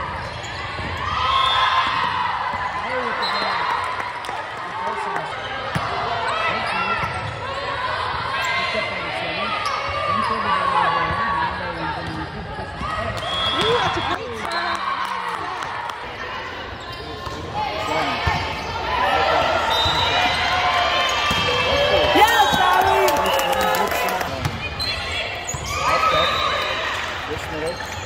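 Indoor volleyball rally: voices calling out across the court, echoing in a large gym, with the sharp thumps of the ball being passed, set and hit, the loudest of them about three quarters of the way through.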